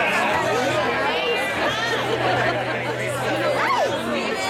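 Crowd chatter: many spectators talking at once in an indistinct babble, with a steady low hum underneath.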